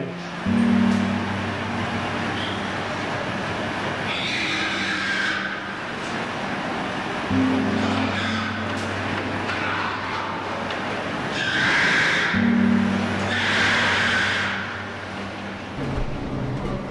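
Sombre background music on low held notes that shift twice. Over it come three harsh bursts of pigs screaming in a CO2 stunning gondola, once about four seconds in and twice toward the end: the sound of animals suffering breathlessness while being gassed.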